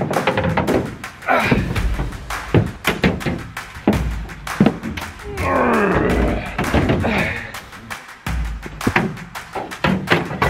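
Repeated thuds and knocks of a mud motor and gear being handled against an aluminium jon boat hull in a pickup bed, over music.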